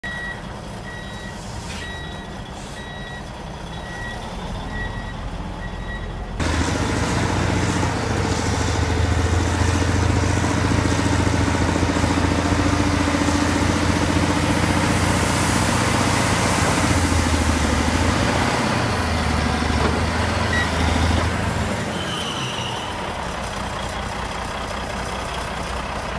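Caterpillar 980F wheel loader's diesel engine running, with its reversing alarm giving repeated high beeps for the first six seconds. About six seconds in the engine comes under load and runs much louder and deeper while the loader works its bucket, easing off again a few seconds before the end.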